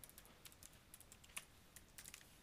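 Faint, quick keystrokes on a computer keyboard, about ten keys in two seconds, as a password is typed in.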